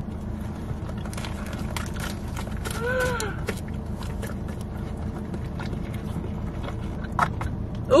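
A large dog biting and chewing a plain beef patty from a paper wrapper, with scattered wet smacks and clicks, over a steady low hum inside a car. A short hum that rises and falls comes about three seconds in.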